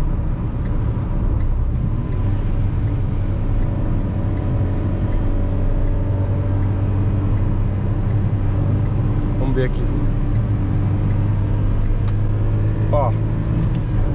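Ford Ka's 1.0-litre three-cylinder engine heard from inside the cabin, running hard at high revs under acceleration, over steady road and tyre noise. A single sharp click comes about twelve seconds in.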